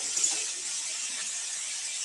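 Steady background hiss of the recording's microphone, with no distinct event.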